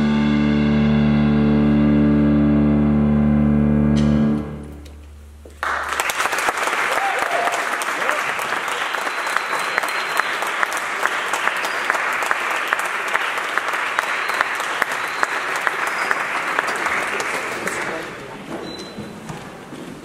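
A jazz big band of saxophones and brass, with bass and piano, holds its final chord, which is cut off about four seconds in. After a moment's pause, the audience applauds, and the applause fades near the end.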